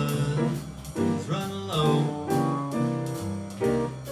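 Live jazz from a small combo: piano chords over a walking upright bass, with drum kit and cymbals keeping time.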